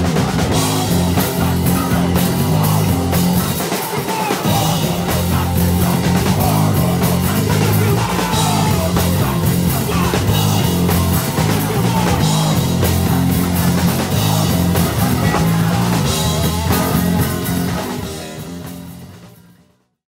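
A hardcore punk band playing live, with drums and electric guitar, fading out over the last few seconds.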